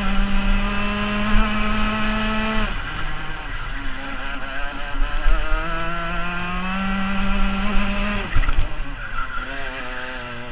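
Rotax FR 125 Max kart's single-cylinder two-stroke engine under throttle, its pitch climbing steadily, then falling sharply about three seconds in and again about eight seconds in before climbing once more.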